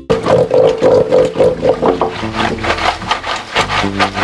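Laundry being scrubbed by hand in a concrete outdoor washing sink: rough rubbing strokes, about four a second, with a held steady tone through the first second and a half.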